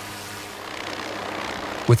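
MQ-8B Fire Scout unmanned helicopter hovering: a steady rotor and engine drone that grows slightly louder in the second half.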